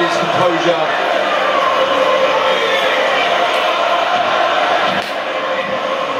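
Steady roar of a large stadium boxing crowd on the fight broadcast, with a commentator's voice faintly beneath it.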